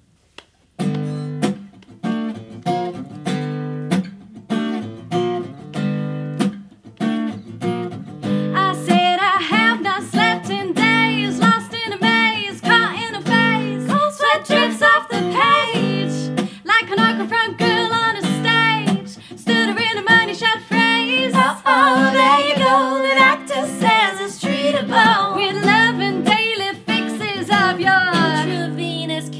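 Acoustic guitar strumming chords as a song's intro, starting about a second in. Women's voices join in singing over it about nine seconds in.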